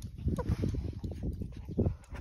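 A dog sniffing close to the microphone, a fast uneven run of short sniffs as it searches the ground for a hidden treat.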